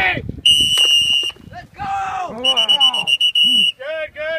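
Two blasts of a coach's whistle, the first steady and just under a second long, the second about a second and a half later with a rapid trill; players shout and yell around them.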